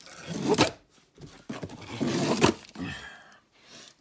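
Large cardboard guitar shipping box being shifted and handled, with rustling and scraping and a couple of sharp knocks, the loudest about two and a half seconds in.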